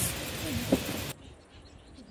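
Outdoor background noise with a brief faint voice, cutting off abruptly about a second in to a much quieter background.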